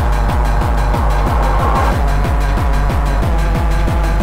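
Early rave dance music played from vinyl records in a DJ mix, with a fast, steady, bass-heavy beat.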